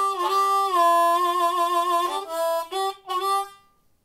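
Suzuki ten-hole diatonic harmonica in C played in held chords that shift in pitch several times, stopping shortly before the end. Its tone has only a slight growl, less than the other harmonica's.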